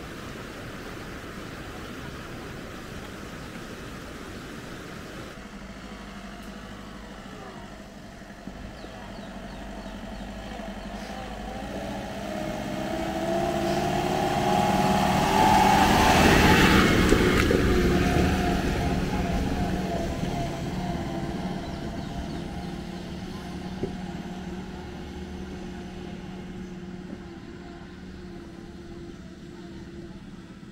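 A motor vehicle's engine approaching, passing close by at its loudest about halfway through, then fading into the distance with its engine note still faintly heard near the end.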